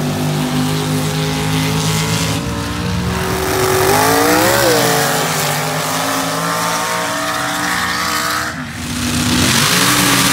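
Mud drag racing trucks running at high revs down a dirt track, the engine note sweeping up and back down about four seconds in. The sound dips briefly near the end.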